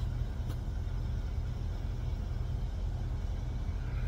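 Steady low rumble of an idling vehicle engine, with a faint click about half a second in.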